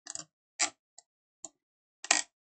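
Four short clicks of a computer mouse about half a second apart, the second the loudest.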